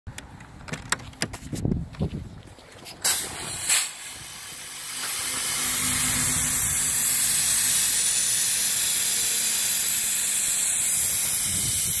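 A 5000 W industrial fog machine starting up: a few clicks and knocks, two short loud blasts about three seconds in, then a steady loud hiss of fog jetting from its nozzle from about four seconds on.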